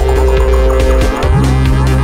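Live electronic dub played on hardware grooveboxes and synthesizers: a deep, steady bass line, a sustained two-note synth chord and regular percussion hits. The held chord stops and the bass drops out briefly just past the middle, then the bass comes back in.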